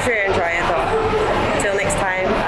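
A woman speaking over steady background noise.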